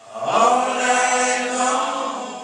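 Men singing a slow church hymn in long, drawn-out notes. The phrase swells in about half a second in and tapers off near the end.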